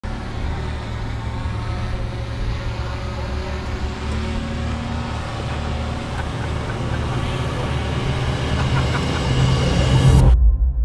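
Ford Bronco's engine working under load as it crawls up a steep rock climb, heard from inside the open-top cabin: a steady low rumble that slowly grows louder toward the end.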